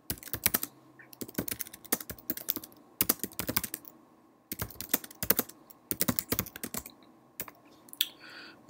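Typing on a computer keyboard: quick runs of key clicks in several bursts, with brief pauses, as a short sentence is typed out.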